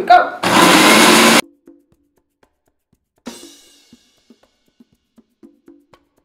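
Countertop blender motor starting and running loudly for about a second, then cutting off suddenly. A fainter, shorter whir at about the middle fades away, followed by a few light clicks. The blender is mixing the egg, lime, mustard and garlic base as oil is added slowly to make mayonnaise emulsify.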